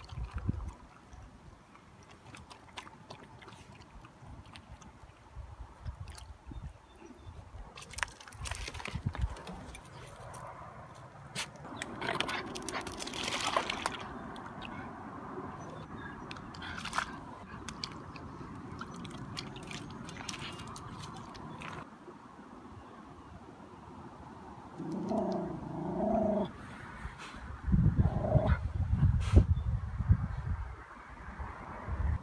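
Miniature schnauzer puppy lapping and splashing in shallow lake water, with small scattered splashes and a longer stretch of splashing about halfway through as it wades in. Two short pitched calls come near the end, followed by a loud low rumble.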